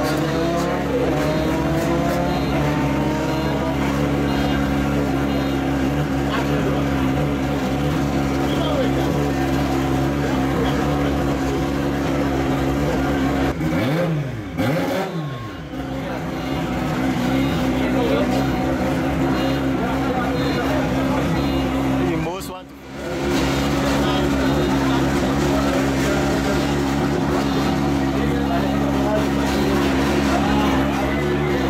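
Several 125cc race motorcycle engines idling together on the starting grid, a steady drone with rises in pitch as riders blip the throttle. The sound dips out briefly twice, around the middle and about two-thirds of the way through.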